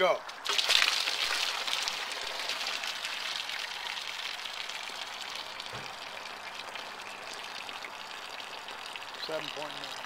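Water gushing out of a Ford Model A radiator's bottom outlet and splashing onto grass. It is strongest in the first couple of seconds, then thins and fades over about eight seconds. The slow drain, timed at 7.8 seconds, is the sign of a partly plugged radiator core.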